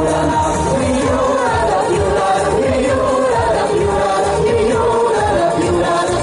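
A mixed vocal group of men and women singing a pop song together into microphones over music with a steady beat, amplified through stage speakers.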